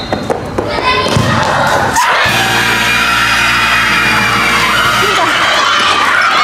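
A soccer ball kicked in a penalty, with shouts and cheering as it goes in for a goal. About two seconds in, an edited-in music sting holds one steady chord for about three seconds.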